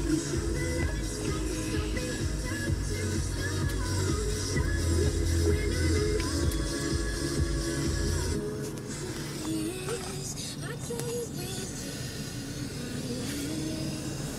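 Music playing from a car stereo inside the cabin, with a heavy bass line; about eight seconds in, the bass drops away and the music carries on thinner.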